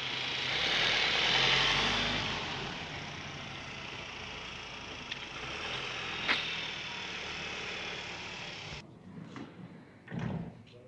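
A car passing on the street: its engine and tyre noise swells over the first two seconds and fades into a steady traffic hum, with a single sharp click about six seconds in, and the sound cuts off abruptly near the end.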